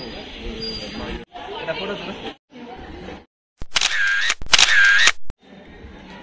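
Bits of voices broken by abrupt cuts, then two loud, shrill high-pitched sounds about 0.7 s long each, one right after the other, with a dipping-and-rising pitch.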